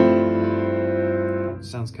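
A Steinway piano chord, a D minor 9 over a G bass, ringing and slowly fading. It is cut off about a second and a half in.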